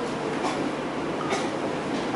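A steady rushing background noise, with a couple of faint clicks.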